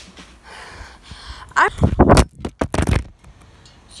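Phone handled right against its microphone as its case comes apart: a cluster of loud knocks and scraping in the middle, then quiet.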